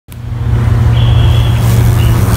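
Figeater beetle's wings buzzing in flight, heard as a loud, steady low drone that swells up in the first half second.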